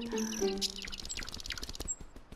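A flock of small birds chirping and twittering, with a quick run of high chirps through the middle, over light background music.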